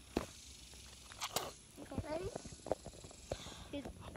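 Faint, brief bits of children's talk with a few sharp knocks or taps, the loudest just after the start and another about a second and a half in.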